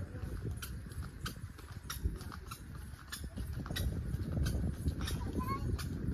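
Footsteps on a tiled walkway at an easy walking pace, about three steps every two seconds, sharp clicks over a steady low rumble.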